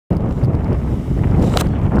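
Wind buffeting the microphone, a steady low rumble, with a single brief click about one and a half seconds in.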